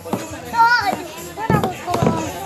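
Children's voices at play: a high-pitched child's call about half a second in, followed by louder overlapping talk near the end.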